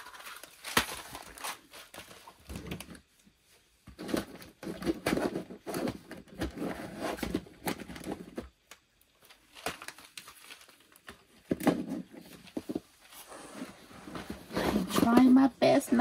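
Packaged press-on nail sets being handled: cardboard boxes crinkling, sliding and tapping against each other in short scattered bursts as they are shuffled and slotted into a drawer.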